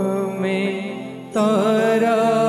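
A man singing a Jain devotional hymn (stavan) in a wavering, melismatic line. A held note fades away, then a new phrase starts loudly about one and a half seconds in.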